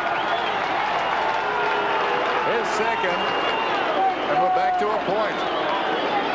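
Large stadium crowd of Australian rules football fans cheering and shouting over a goal just kicked, many voices at once with some whistling.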